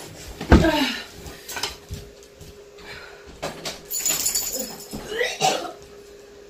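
A woman retching and gagging after swallowing a super-hot chili candy. The loudest heave, about half a second in, falls in pitch, and weaker heaves follow around three and a half and five seconds.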